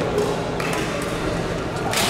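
Badminton racket striking a shuttlecock during a rally: a sharp crack near the end and a softer one about half a second in, over hall noise and voices.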